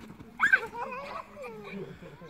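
A child's sharp, high-pitched squeal about half a second in, followed by excited, wordless voices as players scramble for chairs in musical chairs.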